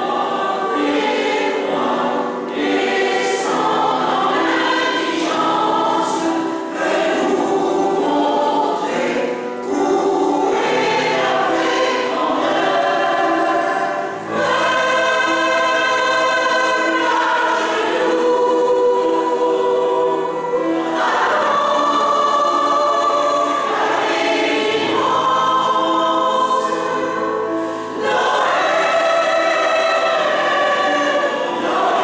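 Mixed choir of men's and women's voices singing a Christmas song in a church, in sung phrases broken by short pauses.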